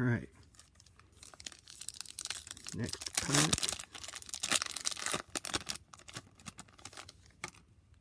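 A Topps Formula 1 trading-card pack's wrapper being torn open and crinkled by hand: a dense, crackling run of tearing and crumpling that is loudest in the middle and thins out near the end.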